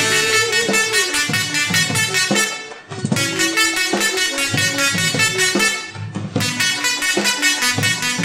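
Double resonant solid state Tesla coil playing a MIDI melody through its sparks. The arcs give harsh, buzzy, horn-like notes, with brief pauses about two and a half and six seconds in.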